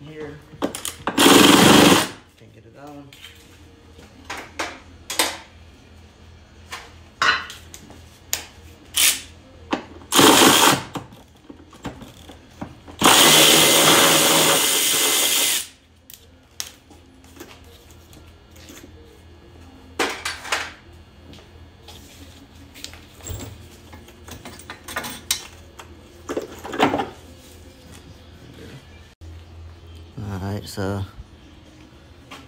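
A cordless power tool spins bolts out of the car's underbody in three bursts, the last about two and a half seconds long, with short clicks and knocks of the tool and metal in between.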